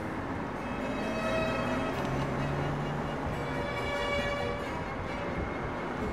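City traffic and road noise heard from a moving open-top car, a steady rushing sound, with quiet music running faintly under it.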